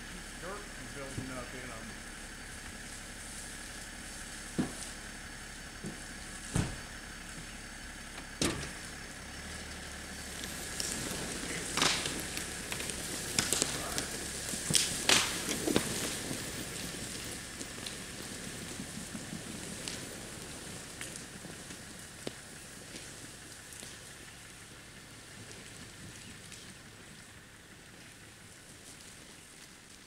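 Scattered sharp cracks and snaps, with a cluster of louder ones about halfway through, as a big log is dragged through brush and undergrowth by a pickup. A steady high tone runs underneath.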